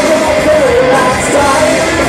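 Live rock band playing loud: electric guitar, bass guitar and drum kit, with a wavering, bending melody line riding on top.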